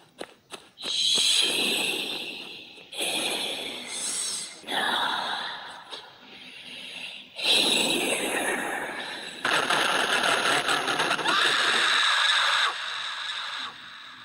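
A woman screaming as a horror sound effect: a series of long, harsh, noisy bursts, each a second or two long.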